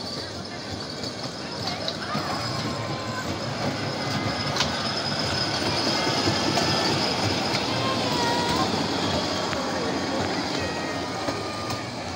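Miniature ride-on park train, a tractor-style locomotive pulling barrel wagons, rolling along its narrow rail track. The rolling noise grows louder as the wagons pass close, loudest around the middle, then eases slightly.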